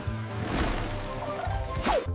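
Cartoon background music under noisy sound effects of a cannon blasting out a bundle of leaves, with a sharp falling swoosh near the end.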